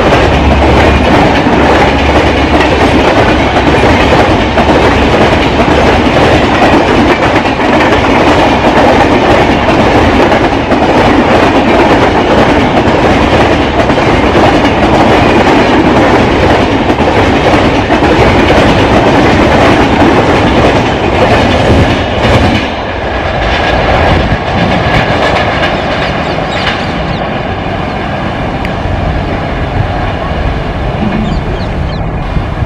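Passenger coaches of an express train running past at speed, a loud steady rush with wheels clattering over the rail joints. The noise eases somewhat about three quarters of the way through.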